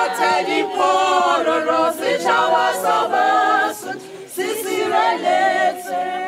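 A choir singing a cappella, several voices in harmony, in sung phrases with a short break about two-thirds of the way through.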